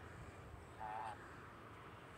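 Quiet outdoor background, with one faint, short pitched call about a second in.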